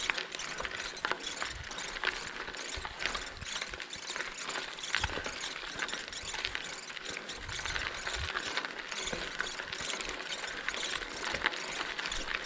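Bicycle coasting on a gravel logging road: the rear hub's freewheel ticks in a fast, steady run of clicks while the tyres crunch over the gravel.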